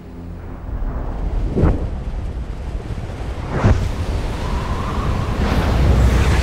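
Deep rushing wind and rumble, building in loudness, with two sharp whooshing swells about a second and a half in and again two seconds later. A faint held tone joins near the end.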